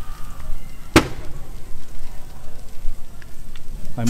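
A vehicle burning fully engulfed in flames, with a steady low rumble and crackle. One sharp bang about a second in is the loudest sound.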